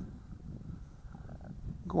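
Faint, uneven low rumble of wind on the microphone in open air, with a man's voice starting right at the end.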